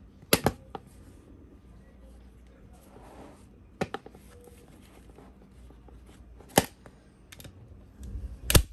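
Hand staple gun driving quarter-inch staples through upholstery fabric into a plywood stool seat: three sharp snaps about three seconds apart, with softer fabric rustling and handling between them.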